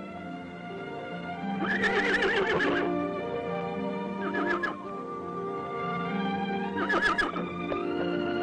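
A horse whinnying three times, the first call the longest and loudest, a short one near the middle and another near the end, over background film music with held notes.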